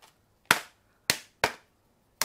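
Three sharp plastic clicks, the first about half a second in and two more close together a little after the first second, as a stuck AAA battery is pried at in the moulded plastic tray of a hard carrying case.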